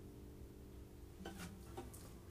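Last notes of a Collings steel-string dreadnought guitar ringing on quietly and dying away, then faint rubbing and two or three soft clicks as the guitar is handled, about a second and a half in.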